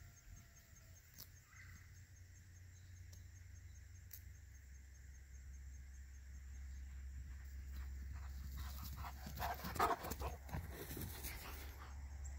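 Quiet field ambience with a steady low rumble of wind on the microphone. Over the last few seconds come louder irregular sounds from a dog close by.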